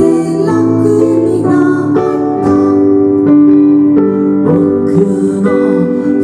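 Stage keyboard with a piano sound and an electric guitar playing a slow song live, chords struck about twice a second.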